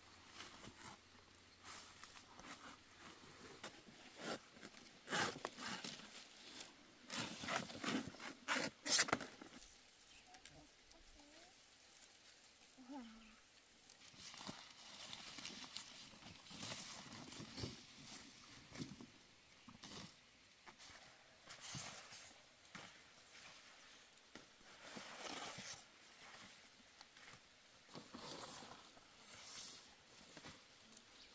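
Large banana leaves and dry stalks rustling and crackling as they are cut, handled and folded, with a run of louder crackles and snaps in the first third and softer, scattered rustling after.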